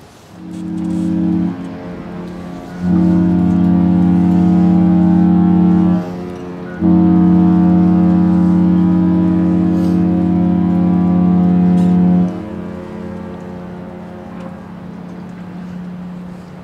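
A large cruise ship's deep horn sounding a farewell salute: a short blast, then two long blasts of several seconds each, with a fainter tone lingering after the last one stops.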